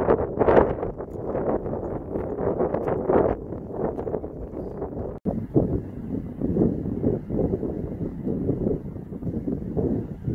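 Gusty wind buffeting the microphone, a rumbling rush that swells and falls, with a momentary drop-out about five seconds in.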